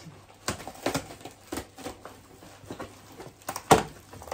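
Cardboard box flaps and plastic packaging being handled during unboxing: a run of short rustles and crinkles, with one sharp, louder crackle near the end.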